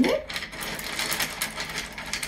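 Small white pebbles clicking and rattling against each other and their dish as a hand rummages through them and scoops some up: a quick, busy run of small clicks.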